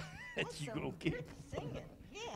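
Faint voices talking away from the microphone, in short phrases whose pitch rises and falls.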